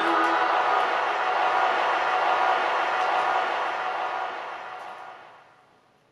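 The end of a choral track on a vinyl record played on a turntable: the singing stops about half a second in, and a wash of sound without clear pitch carries on and fades out over the last couple of seconds, with a few faint ticks from the record.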